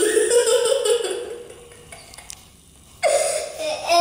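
A young boy laughing: voiced sound in the first second, a quieter gap, then laughing again near the end.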